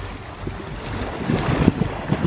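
Water splashing from two swimmers' strokes, getting louder in the second half, with wind rumbling on the microphone.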